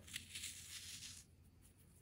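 Clumps of oven-dried sand being crushed and sifted through fingers, giving a faint, gritty hiss that lasts about a second.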